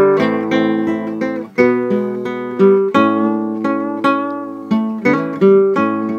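Acoustic guitar playing a strummed chord accompaniment in a steady rhythm, with no voice.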